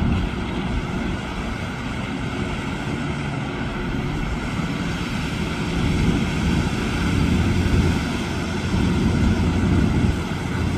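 Pickup trucks driving through deep floodwater: a steady engine drone mixed with the rush and splash of the bow wave they push, growing louder about halfway through and again near the end as the trucks come closer.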